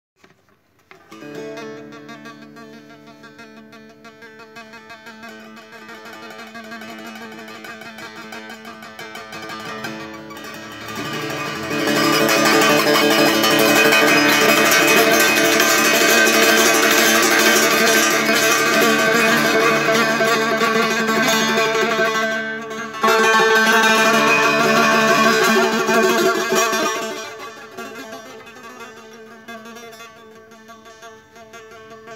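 Persian setar played as an improvised solo, plucked notes ringing on over one another. It starts softly, grows much louder about twelve seconds in, and falls away again near the end.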